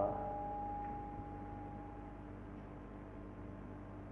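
Lecture-hall PA system ringing with steady tones: a higher pitch fades out over about two seconds while a lower one holds on, over a low mains hum. This is microphone feedback ring from the PA gain set high, which the speaker suspects is too loud.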